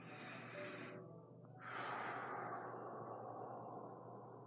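A woman breathing: a breath in lasting about a second, then a long sigh out that starts about a second and a half in and slowly fades.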